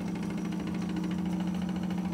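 Wilesco toy steam engine running at a steady speed: a steady low hum with a fast, even beat over it, the engine still cold.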